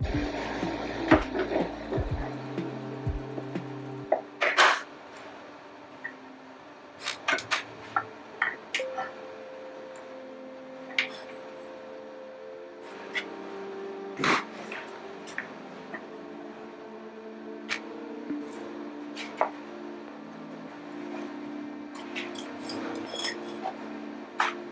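Background music with sustained notes, over scattered metallic clicks and knocks from a brake caliper being handled and held against a drilled and slotted brake rotor. The loudest knocks come about four and a half seconds in and again near fourteen seconds.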